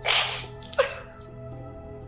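A woman's sudden, breathy sob at the start, then a second, shorter sob just under a second in, over sustained background music.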